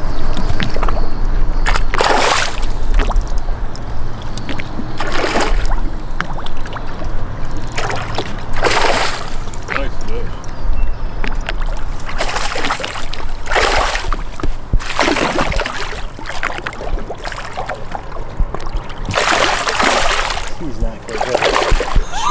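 Water splashing in about seven short bursts a few seconds apart as a hooked smallmouth bass thrashes at the surface beside the boat, over a steady low rumble.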